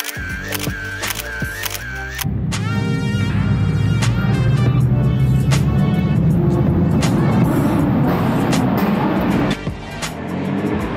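Background music. From about two seconds in, a car engine revs, rising in pitch, then keeps running loud and low under the music until just before the end.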